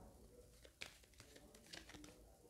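Faint handling of tarot cards: two soft rustles or clicks of card stock, about a second apart, against near silence.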